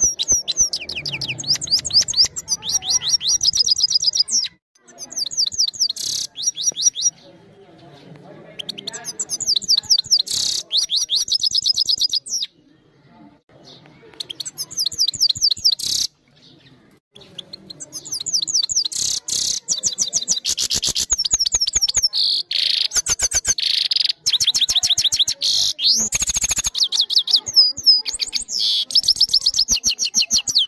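Caged goldfinch singing: long phrases of rapid, high twittering notes, broken by a few short pauses.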